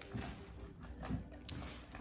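Quiet room tone with a few faint, light knocks, the clearest about one and a half seconds in.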